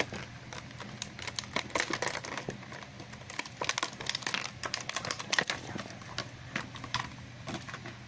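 Clear plastic toy packaging crinkling and crackling in the hands as it is pulled open: an irregular run of many small, sharp cracks.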